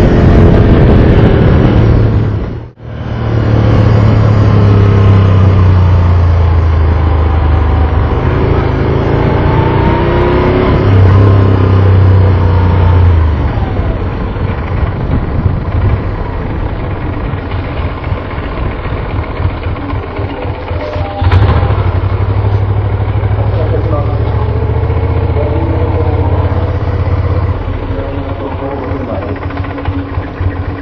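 Moto Guzzi V11 Sport's air-cooled 90-degree V-twin running at low speed, its pitch rising and falling as the bike rolls slowly, with a brief drop-out about three seconds in and a short knock about twenty seconds in. Near the end it runs lower and more unevenly, close to idle.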